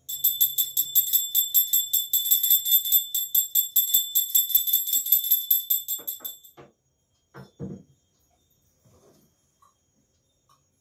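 Brass puja hand bell rung rapidly and evenly, its ring sustained, for about six and a half seconds, then it stops. A few soft knocks follow, the loudest about a second later.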